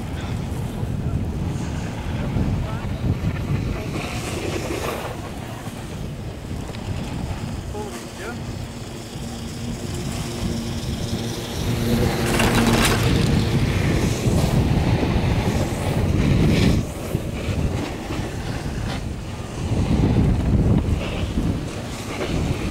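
Wind buffeting the microphone on a moving chairlift, over a low steady rumble from the lift; about halfway through the sound swells with a low hum for a few seconds.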